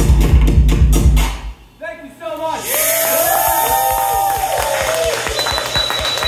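Live band music with a loud, fast driving beat stops abruptly about a second in. After a brief lull the club crowd cheers and whoops, with a thin high whistle-like tone near the end.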